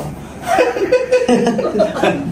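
A man chuckling, a short run of laughs starting about half a second in.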